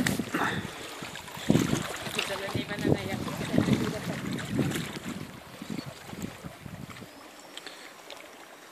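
Gusting wind on the microphone over water splashing, loudest in the middle and easing off about seven seconds in.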